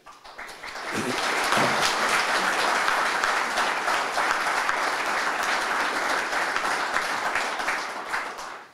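Audience applauding: the clapping swells over the first second or so, holds steady, then begins to die away near the end.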